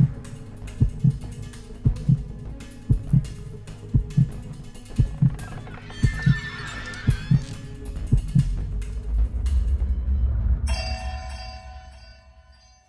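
Suspense film soundtrack: a heartbeat sound effect, paired low thumps about once a second, over an eerie music drone. A low rumble swells near the end, then gives way to high ringing chime-like tones.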